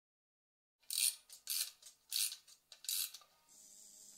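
Four short hissing swishes, about two-thirds of a second apart, starting about a second in, followed by a faint steady hiss.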